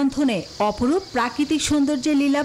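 Steady high-pitched chirring of an insect chorus, crickets or cicadas, under a man's narrating voice.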